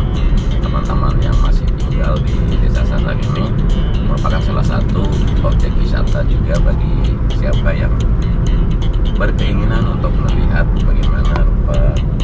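Steady low rumble of a car driving, heard from inside the cabin, with music and an indistinct voice over it.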